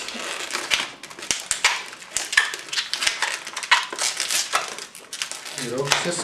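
Latex modelling balloons squeaking and crackling as hands twist and handle them: an irregular run of short rubbing squeaks and clicks.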